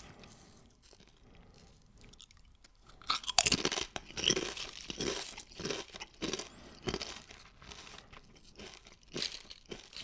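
Doritos Roulette tortilla chips being crunched and chewed in the mouth. A run of irregular crunches starts about three seconds in.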